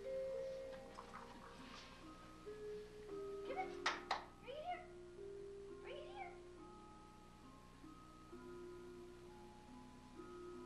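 Portable electronic keyboard played as a slow melody of held single notes in a mallet-like voice. Two short cries with bending pitch come through about four and six seconds in, and a pair of sharp clicks comes near the first.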